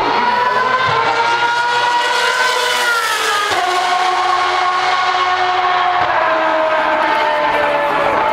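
Single-seater racing car engine at high revs, its note climbing steadily, then dropping sharply about three and a half seconds in, then sinking slowly as the car passes and pulls away.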